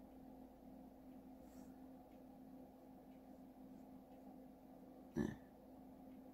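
Near silence: room tone with a faint steady hum, broken once by a short sound about five seconds in.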